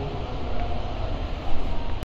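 Steady low rumbling background noise with no clear source, swelling louder about one and a half seconds in.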